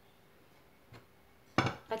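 Near-silent room tone broken by one faint click of kitchenware about a second in, then a woman's voice starts near the end.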